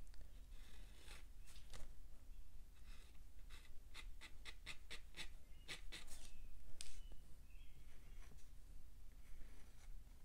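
Fine-tip Sharpie pen scratching short, sketchy ink strokes across textured watercolour paper, with a quick run of strokes about four seconds in.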